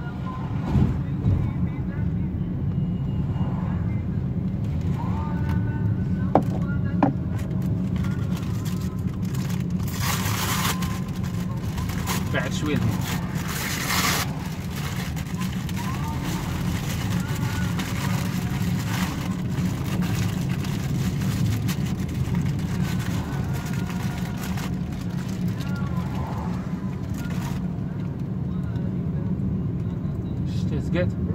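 Inside a moving petrol car on a wet road: a steady low drone of engine and tyres in the cabin, with two loud hissing rushes about ten and thirteen seconds in.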